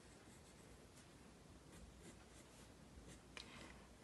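Faint scratching of a mechanical pencil lightly tracing lines on paper, in short strokes, the clearest about three and a half seconds in.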